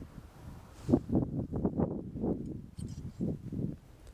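A run of irregular soft knocks and rustles close to the microphone, as of clothing and gear shifting against the hide netting.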